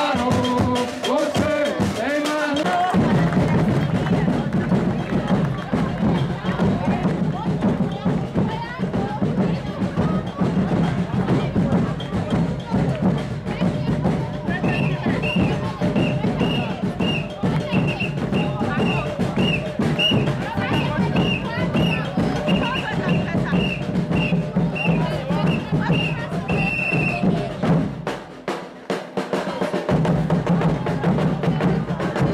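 Live band of large bass drums and snare drums playing a steady, driving beat, with a man singing over it for the first few seconds. From about halfway, short high notes at one pitch repeat about twice a second for some twelve seconds. The drums thin out briefly near the end.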